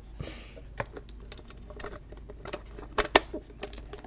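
A small pink toy suitcase being handled: a soft rustle near the start, scattered light taps and clicks, and a pair of sharp clicks about three seconds in as its metal clasp is snapped shut.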